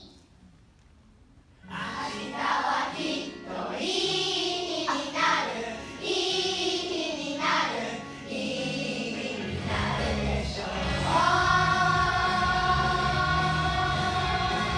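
A children's choir singing, starting about two seconds in after a short quiet. About ten seconds in, a fuller accompaniment with a low bass comes in under the voices, and the singers hold one long note near the end.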